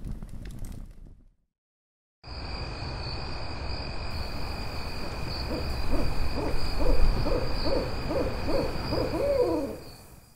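Owl hooting sound effect: a run of about eight hoots, roughly two a second, with the last hoot sliding down in pitch. It sits over a night ambience bed with a steady high-pitched ringing, which starts after a second of silence early on.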